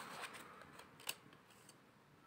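Tarot cards handled and shuffled by hand, giving a few faint card clicks and snaps, the sharpest about a second in.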